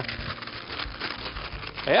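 A sheet of baking paper rolled up and handled by hand: a steady papery rustle with many small crackles.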